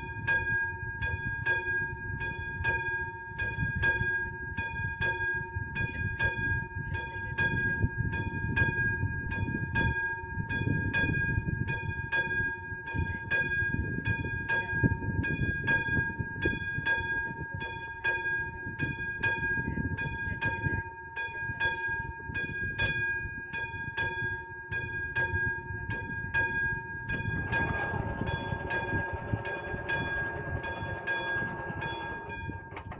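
Railway level-crossing warning bell ringing evenly at about two dings a second, signalling that a train is approaching. Near the end a motor whir joins in as the barrier arms start to lower, over a gusty low rumble.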